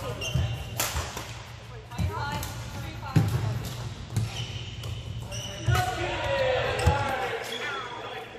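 Indoor badminton hall between rallies: sneakers squeaking on the court surface, a few sharp clicks and low thuds of play and footsteps, and players' voices over a steady low hum of the hall.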